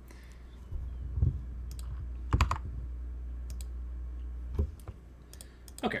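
Scattered computer keyboard keystrokes and clicks, over a low steady hum that starts about a second in and stops near five seconds.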